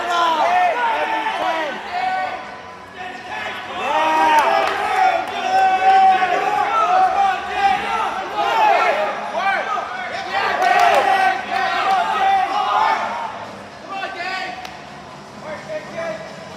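Several people shouting and cheering with many voices overlapping, loudest through the middle and easing off near the end.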